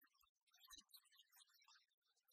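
Near silence, with only faint scattered crackle.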